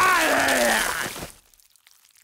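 Cartoon projectile vomiting sound effect: a loud gushing, splattering spew with a voiced retch that falls in pitch, lasting about a second and a quarter before it stops.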